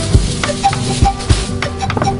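Instrumental Peruvian band music: low drum strikes in a steady rhythm of about three a second under short melody notes, with a hissing scrape near the start and no singing.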